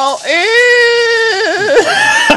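A man's drawn-out, high-pitched vocal cry, held steady for about a second and then wavering and breaking up.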